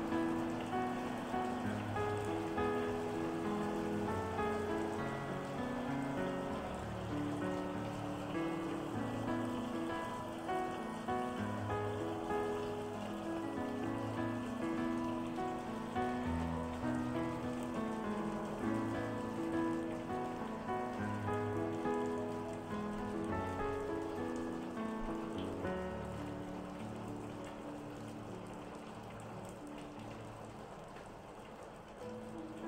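Calm solo piano music over a steady patter of rain, the piano notes slowly getting quieter near the end.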